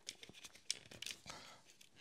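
Faint handling rustles and small clicks as a network cable is plugged into a MikroTik plastic wireless access point, with one sharper click about two-thirds of a second in.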